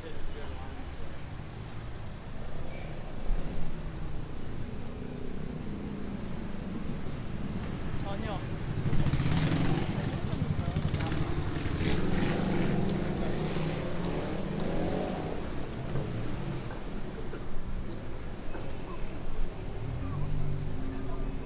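Busy city street ambience: a steady rumble of road traffic with passers-by talking nearby, louder for several seconds in the middle.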